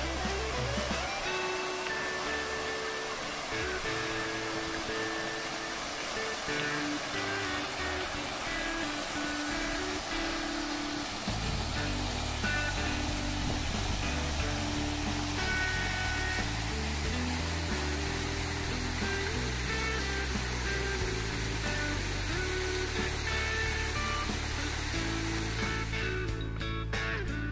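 Background music over the steady rushing splash of a park fountain's jets falling into a pond. A bass line joins the music about halfway through.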